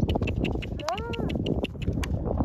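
Horse cantering on grass with its hoofbeats heard, and one short high-pitched call of a person's voice, rising then falling, about a second in.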